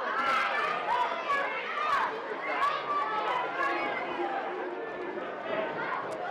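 Wrestling crowd's voices, with many people chattering and calling out at once and no single voice standing out.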